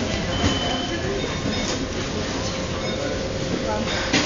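Steady rumbling store background noise with indistinct voices, mixed with the rustle of a phone moving against clothing.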